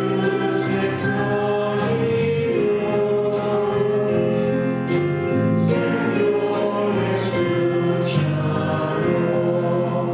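Church choir singing a sacred song in long held notes, in a reverberant church.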